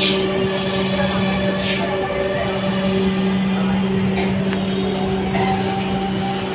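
Inside a Dhaka Metro Rail carriage: the electric train running with a steady, even hum and rumble.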